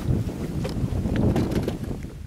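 Wind buffeting the microphone in a steady low rumble, with a few faint ticks.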